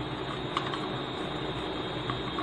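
Metal spoon stirring milk in a steel mug, with a few faint clinks against the side over a steady background hiss.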